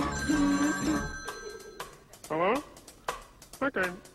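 A sung tune stops about a second in, overlapped by a telephone bell ringing for about a second and a half. Short gliding voice sounds follow near the middle and again near the end.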